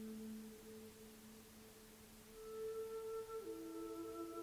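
Soft ambient background music of long held tones. A low tone fades away, and a new chord of higher held tones swells in about halfway through.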